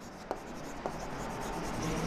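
Chalk writing on a chalkboard: soft scratching strokes, with two light taps in the first second.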